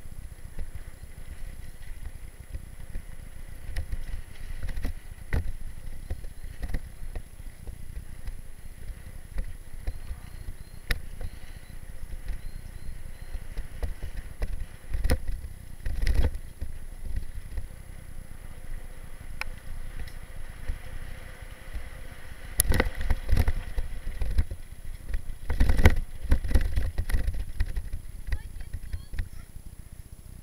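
Mountain bike rolling down a bumpy dirt trail, heard close up from a camera mounted on the bike: a steady low rumble of tyres and wind, with scattered sharp clicks and knocks as the bike rattles over bumps. It grows rougher and louder twice in the last third of the descent.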